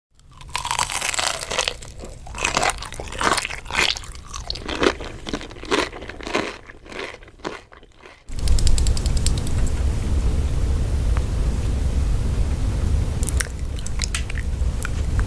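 Close-miked crunchy bites and chewing of food, a rapid run of crisp crackles for about eight seconds. Then it cuts off abruptly and a steady low rumble takes over, with a few light clicks near the end.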